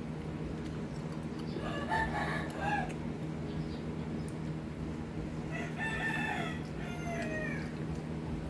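A rooster crowing twice, the first crow about two seconds in and a longer one about halfway through, over a steady low hum.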